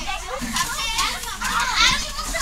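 A crowd of young children chattering and calling out over one another, with one louder high-pitched shout near the end.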